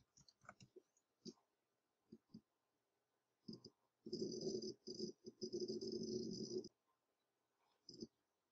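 Computer keyboard typing: a few scattered keystrokes and clicks, then a quick run of keystrokes lasting between two and three seconds, beginning about four seconds in.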